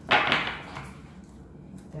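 A deck of tarot cards being shuffled by hand: a brief rustling swish of cards just after the start that fades over about half a second.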